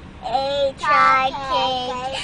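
A young girl singing in a high voice, three short held phrases one after another.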